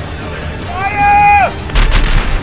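A held, pitched cry-like sound effect that slides up at its start and drops sharply away at its end, followed about a quarter second later by a sudden heavy boom with a deep rumble.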